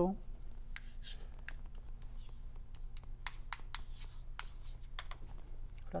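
Chalk writing on a blackboard: a run of short, irregular taps and scratches as symbols are written, over a steady low room hum.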